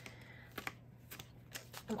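A deck of tarot cards being handled and shuffled by hand: a handful of separate light clicks of card edges, faint.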